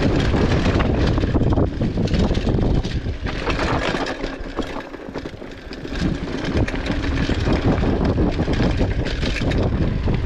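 Trek Marlin 5 mountain bike rolling fast down a dirt trail: wind buffeting the camera microphone and tyres rumbling over the ground, with steady rattling and clattering from the bike over bumps. The sound eases off for a moment about halfway through as the bike slows, then picks up again.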